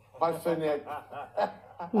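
A person chuckling in a run of short bursts of laughter, with some speech.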